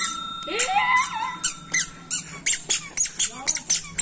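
A toddler's squeaker shoes squeak in a quick run of short chirps as she walks, about five or six a second in the second half. Earlier, a child's brief voice and a steady high tone are heard.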